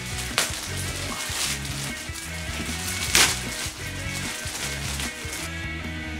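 Background music with a steady bass line, over the crackling rustle of a clear plastic bag around a futon as it is handled, with two louder crinkles, one just after the start and one about three seconds in.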